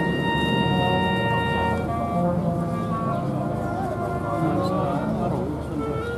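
Military wind band of flutes, saxophones, horns and trumpets playing long held chords that move to new notes about two seconds in.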